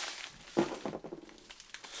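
A mailing envelope rustling and crinkling in the hands, in short scattered crackles, as it is worked open.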